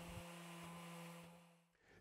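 Near silence: a faint steady low hum that fades out about one and a half seconds in.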